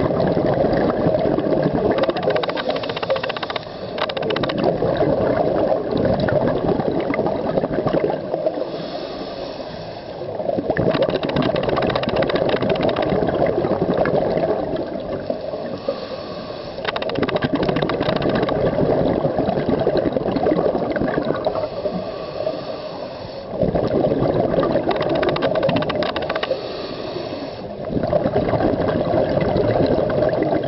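Scuba diver breathing through a regulator underwater: long bubbling exhalations of three to four seconds each, about every six seconds, with quieter inhalations between them.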